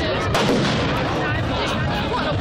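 A single sharp firework bang about a third of a second in, ringing out briefly, over the steady chatter of a crowd.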